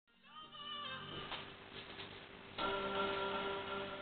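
Pop music from a music video, played through a television's speaker and picked up off the set. A fuller sustained chord comes in suddenly about two and a half seconds in.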